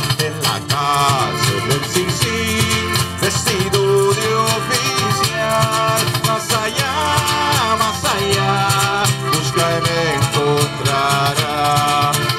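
Live Mexican folk music from a small band: strummed acoustic guitar, a smaller strummed string instrument and accordion, over a steady rhythm of sharp percussive strokes.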